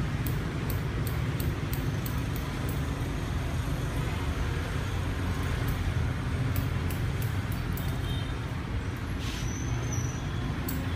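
Hair-cutting scissors snipping a fringe in quick runs of sharp clicks, a few a second, over a steady low rumble.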